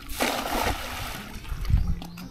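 Water splashing in one short burst of under a second, followed by a few low thuds.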